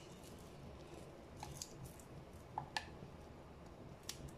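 Faint small clicks and light crisp ticks from red onion slices being handled and dropped by hand into a nonstick pan among raw fish pieces. There are a few scattered ticks, the sharpest about three-quarters of the way through.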